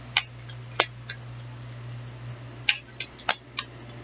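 Tarot cards being handled as the next card is drawn from the deck: about seven sharp card clicks and snaps in two bunches, one near the start and one about three seconds in.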